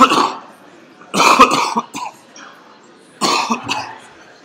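A man coughing: three loud coughs, at the start, about a second in and about three seconds in.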